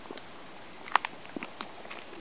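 Small campfire of burning sticks crackling: a few sharp, irregular pops and clicks, the loudest about a second in.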